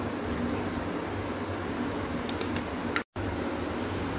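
Milk pouring from a plastic pouch into a stainless steel pot, over a steady background hum. The sound cuts out briefly about three seconds in.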